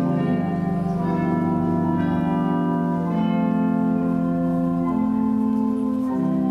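Organ playing slow, sustained chords, the chord changing every one to two seconds.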